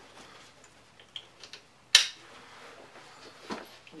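Rifle backpack's straps being handled, with faint ticks and rustles and one sharp click about two seconds in, as the plastic waist-strap buckle is snapped shut.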